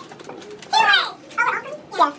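Indistinct human voice in a small room: two short vocal sounds with sliding pitch, the first about a second in and a shorter one just after.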